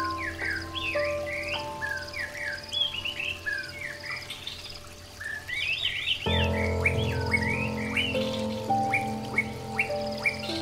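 Birds chirping and singing in quick, repeated calls over soft background music of long held notes; the music swells to a fuller chord about six seconds in.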